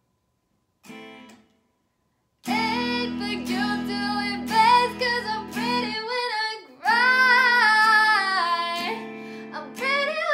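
A woman singing, accompanied by strummed guitar chords, after about two seconds of near silence. A long held note near the end wavers up and down in pitch.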